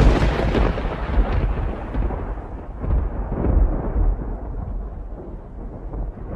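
Thunder sound effect: a sudden deep rumble, loudest at the start, that rolls on and swells again a few times while slowly dying away.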